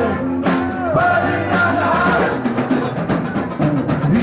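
Live rock band playing: drum kit, electric guitar and bass under a sung vocal line, all amplified.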